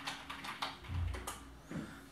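Computer keyboard being typed on: a few separate keystrokes, with a dull low thump about a second in.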